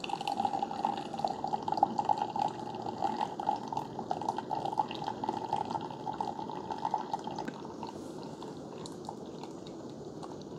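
Keurig K-Supreme Plus coffee maker dispensing a thin stream of coffee into a glass mug: a steady trickling, splashing pour that grows quieter about seven and a half seconds in.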